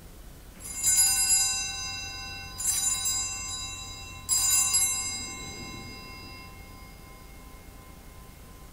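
Altar bell struck three times at the elevation of the chalice during the consecration, each ring clear and high and fading slowly before the next.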